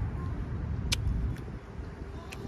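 Mouth sounds of chewing a meatball flatbread sandwich, with a sharp click about a second in, over a low rumble that drops away about one and a half seconds in.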